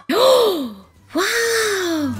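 A young girl's two long exclamations of amazement, "ooh"-like, each rising and then falling in pitch, about a second apart.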